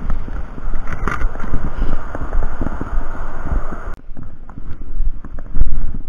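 Wind buffeting the camera microphone on a moving moped, a dense, loud rumble and hiss with road and engine noise underneath. The upper hiss drops away suddenly about two-thirds of the way through, leaving the low rumble.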